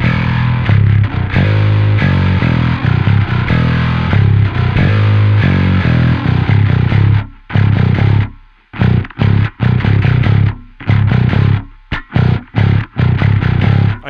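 Harley Benton PJ-5 five-string passive electric bass played fingerstyle through an amp: a low riff on the B string. Connected, sustained notes for about seven seconds, a brief pause, then shorter, separated notes.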